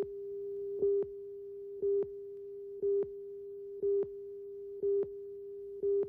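Steady line-up test tone from a videotape slate and countdown leader, with a short, louder beep about once a second as the countdown runs.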